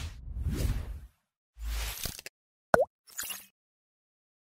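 Logo-animation sound effects: a rumbling swell of noise in the first second, a deep thud near the middle, a quick pitched 'bloop' that dips and rises about three-quarters of the way in, then a short airy hiss.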